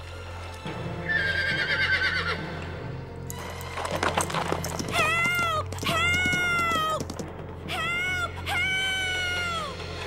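A horse whinnying over background music: four drawn-out neighs in the second half, each rising then falling away.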